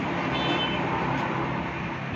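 A motor vehicle engine running steadily nearby, a low hum over road noise.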